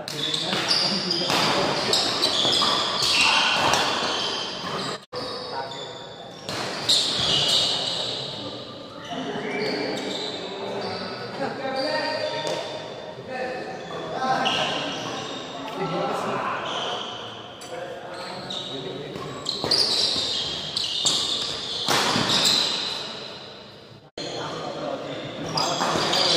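Badminton doubles rally in a large, echoing sports hall: rackets striking the shuttlecock and players moving on the court, mixed with people's voices.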